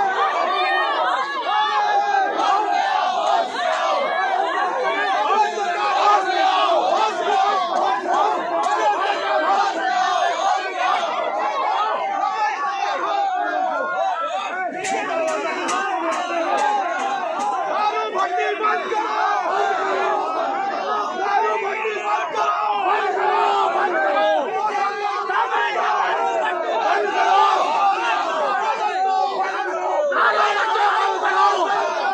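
A crowd of protesters shouting over one another in a loud, continuous clamour of overlapping voices as they jostle with police.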